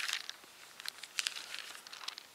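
Bible pages rustling as they are leafed through, several short papery rustles in a row.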